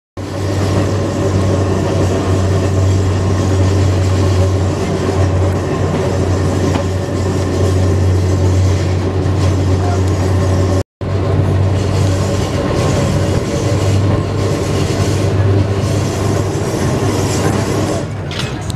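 Vintage electric tram in motion, heard from its open upper deck: a loud, steady low hum of motors and wheels running on the rails. The sound cuts out briefly about eleven seconds in.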